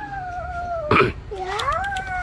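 A Bắc Hà puppy whining while its mouth is held open: one long high whine that sags slightly in pitch, a short sharp yelp about a second in, then a second whine that rises in pitch.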